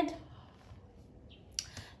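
Quiet room tone with two short clicks near the end.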